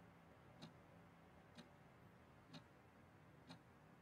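Near silence broken by four faint, short ticks evenly spaced about a second apart, a slow steady ticking.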